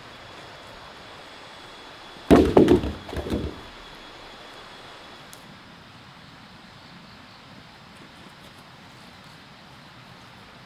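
A heavy wooden log hits the ground about two seconds in: a loud thud followed by a few quicker knocks as it settles, over a steady outdoor background with a faint high steady tone.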